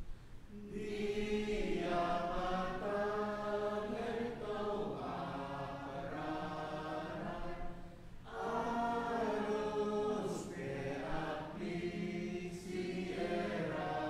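A congregation singing a hymn in Palauan in long held phrases, breaking briefly between lines about eight seconds in.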